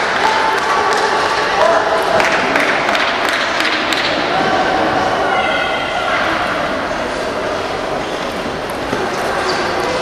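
Table tennis rally: the celluloid ball clicking off bats and the table at irregular intervals, over a steady murmur of voices in the hall.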